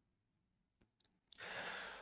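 Near silence, then a man's faint breath in during the last half second, just before he speaks again.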